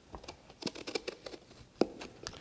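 Knife cutting an eggplant in half: a run of small, irregular crackles and knocks, with the sharpest knock near the end.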